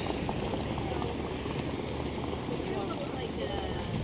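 Steady outdoor background noise at a harness racetrack, with faint, indistinct voices in it.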